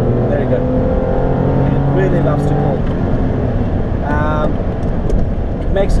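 Honda Legend's 2.7-litre C27A V6 engine and road noise heard from inside the cabin while driving. A steady engine note fades about three seconds in, leaving the road noise.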